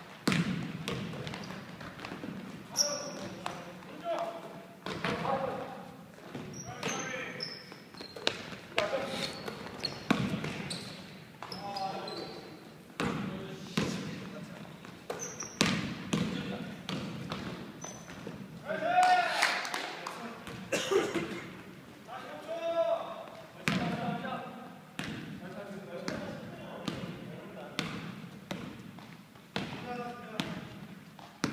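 Indoor basketball game sounds: a basketball bouncing on a hardwood court, repeated sharp thuds from the ball and feet, and brief high squeaks from sneakers. Players shout to each other throughout.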